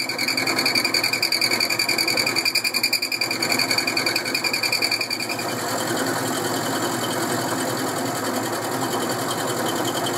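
End mill spinning in a Boxford lathe's spindle, milling a metal T-nut blank fed across it. For the first five seconds or so a high whine and a pulsing sit over the cutting noise. The whine then stops and the running and cutting go on steadily.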